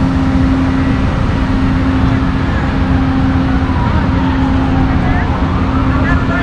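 Amtrak Silver Star passenger train at the station platform: a steady low rumble with a constant hum.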